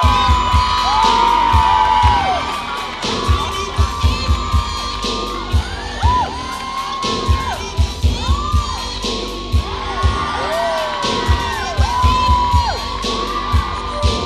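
Dance music with a bass beat, and an audience whooping and cheering over it again and again.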